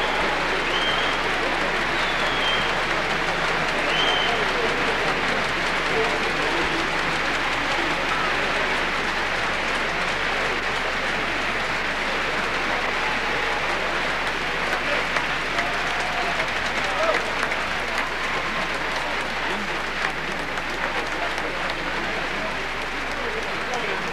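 A concert audience applauding steadily, with voices in the crowd.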